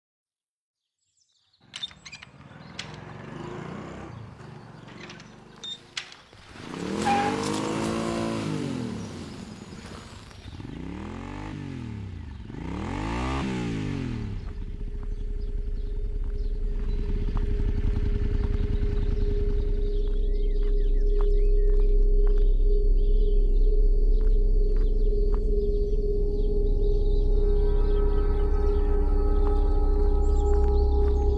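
Quiet street ambience with a few faint chirps and clicks, then two vehicles pass by, the first about seven seconds in and the second about twelve seconds in. From about fourteen seconds, a low, steady ambient music drone comes in and grows louder.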